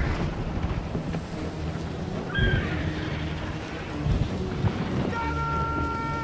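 A deep, wind-like rumble from a battle scene's sound mix. Short high tones come in around the middle, and a held tone with several pitches comes in near the end.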